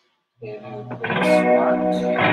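Live psych rock band with electric guitar. After a short silence, a guitar comes in about half a second in, and the full band comes in loud about a second in.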